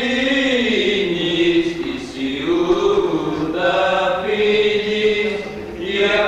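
Greek Orthodox Byzantine chant sung unaccompanied during the Epitaphios service: slow, drawn-out melodic lines that slide from note to note, with a short break between phrases about two seconds in.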